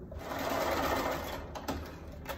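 Electric sewing machine stitching a short seam in a quilt block: one steady run of about a second and a half that stops before the end, followed by a light click.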